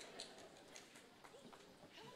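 Near silence in a large room, with a few faint soft knocks and clicks, the clearest just after the start, and a trace of distant murmuring.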